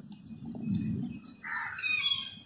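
A bird calling in the background about one and a half seconds in, a rough mid-pitched call, after a low rumble.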